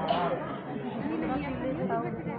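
Speech only: several people's voices talking over one another in overlapping chatter.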